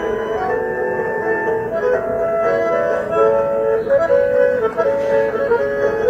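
Bandoneon playing a melody of held, reedy notes over chords, the notes changing every half second or so.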